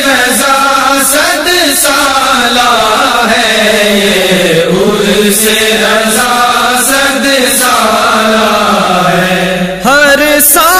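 Wordless vocal chant in a devotional Urdu kalam: voices hold long notes that slide slowly up and down, with no words and no instruments. There is a brief dip just before the end.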